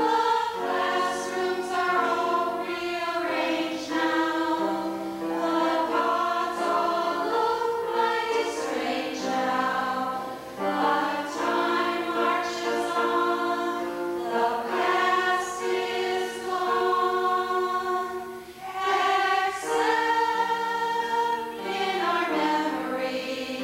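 Women's choir singing together, held notes in phrases with short breaths between them, around a third of the way through and again near the end.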